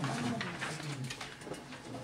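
Low, indistinct voices murmuring in a classroom, with no clear words.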